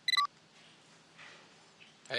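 A mobile phone's short electronic key beep as the call is answered, its pitch dropping at the end, followed by faint room tone.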